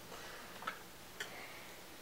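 Two faint, sharp clicks about half a second apart over quiet room tone, from small makeup items such as a pencil being handled.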